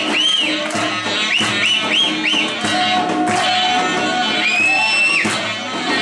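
Live Greek folk dance music from a band, with a plucked string instrument under high lead notes that swoop up and down in short arcs, one held longer near the end.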